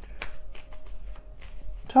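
Tarot cards being shuffled by hand: a loose run of soft card clicks and riffles, with a faint steady tone underneath.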